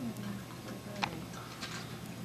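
Quiet room tone with a steady low hum and one sharp click about halfway through.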